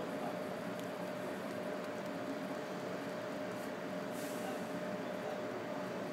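Steady drone of running plant machinery with a faint steady hum-tone, plus a few soft clicks of operator-panel keys being pressed.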